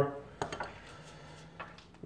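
A couple of faint, light clicks from handling a small plastic mixing container and spoon, one about half a second in and a fainter one near the end, over quiet room tone.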